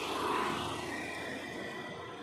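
Car driving along a road, a steady rush of road and engine noise heard from inside the cabin, swelling briefly about a third of a second in.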